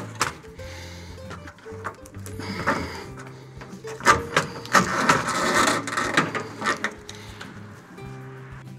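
Background music, over sharp clicking and scraping of a steel fish tape and a corrugated plastic wire loom being pulled through a hole in a truck bed wall, busiest in the second half.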